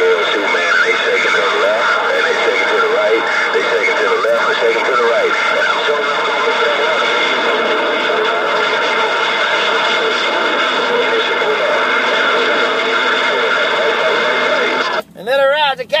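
CB radio receiving a strong, noisy signal: a loud, steady hiss with several steady whistling tones and garbled voices buried underneath, the sound of stations transmitting over one another on the channel. It cuts off abruptly about a second before the end.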